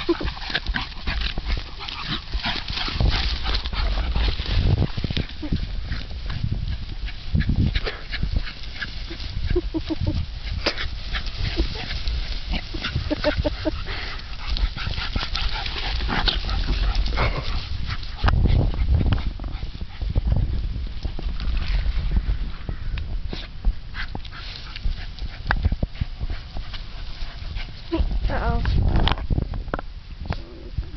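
Two small dogs playing and pushing through tall grass: dog vocal noises over a continuous irregular rustling and crackling of grass.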